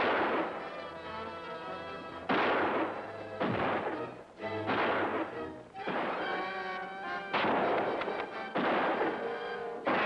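Gunshots in a gunfight, about six shots roughly one to one and a half seconds apart, each with a long echoing tail, over dramatic film score music.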